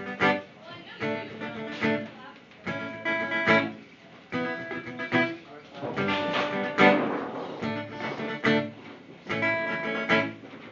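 Acoustic guitar strummed hard in a steady rhythm of ringing chords, the instrumental opening of a song played live.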